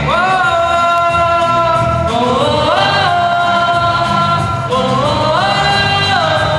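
A song with a singer holding long, drawn-out notes that step up in pitch and back down, over a pulsing bass line.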